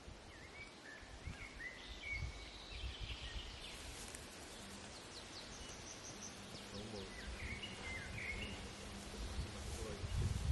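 Faint outdoor field ambience: short chirping bird calls in the first few seconds and again near the end, over an uneven low rumble.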